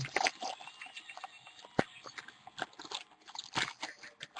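Foil pack wrapper crinkling and tearing as it is peeled open by hand: a quiet, irregular string of crackles with one sharper snap a little under two seconds in.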